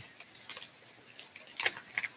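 Scattered light clicks and taps of small objects being handled on a workbench, about five in two seconds, the loudest about one and a half seconds in.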